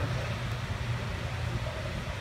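A steady low hum with a faint hiss over it, the background machinery noise of a large factory hall.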